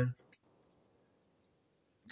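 The end of a man's word, then a few faint, short clicks and near silence.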